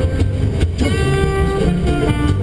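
Jazz music with guitar playing on the car radio, over a steady low road and engine rumble inside the moving car.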